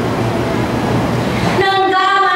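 A steady rumbling noise with a faint voice in it, then about one and a half seconds in a woman starts singing long held notes into a microphone.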